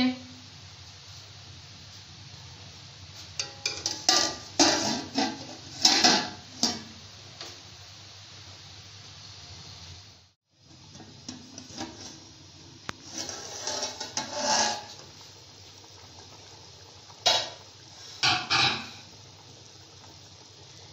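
A metal lid and a steel ladle clattering against a large metal cooking pot in several short bursts of knocks, over a steady low hum.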